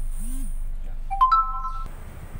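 An electronic chime: three rising notes, entering one after another and held together as a chord, sounding about a second in for under a second, over a steady low hum.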